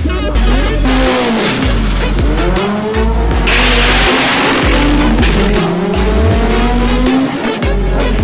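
A front-wheel-drive drag car accelerating hard down the strip, its engine note rising, with a loud rush as it passes close about four seconds in. Electronic music with a heavy, pulsing bass beat plays over it.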